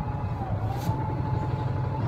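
Passenger vehicle heard from inside its cabin while moving: a steady low rumble with a faint, thin whine that dips in pitch and comes back up.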